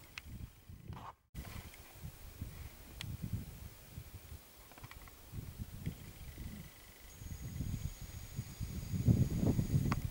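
Wind buffeting the camera microphone in uneven gusts, heaviest near the end, with a brief dropout about a second in.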